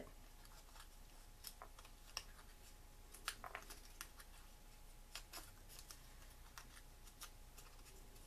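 Faint, scattered crinkles and ticks of paper flower petals being folded and pinched by hand.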